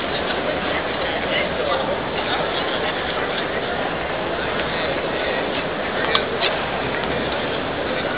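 Crowd chatter from many overlapping voices, none standing out, with two short sharp clicks about six seconds in.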